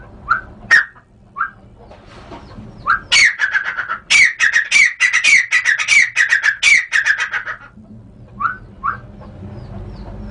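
Grey francolin (teetar) calling: a few short single chirps, then a loud, rapid run of repeated call notes, about four or five a second, lasting roughly four and a half seconds and stopping abruptly. Two more short chirps come near the end.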